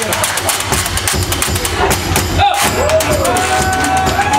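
Live blues band playing: a washboard scraped in a fast, even rhythm over a steady low bass. A held, gliding pitched melody line comes in about two and a half seconds in.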